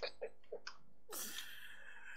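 A few faint clicks, then about a second in a short breathy burst of air from a person close to the microphone.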